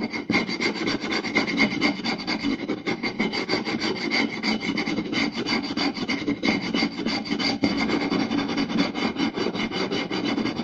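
Fingers scratching and tapping fast on a round wooden plate, a dense unbroken run of rapid strokes with no pauses.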